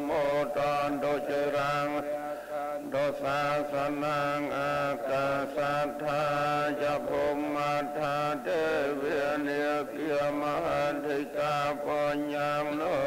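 Cambodian Buddhist monks chanting together in unison, a many-voiced recitation on a low, nearly level pitch with short pauses between phrases.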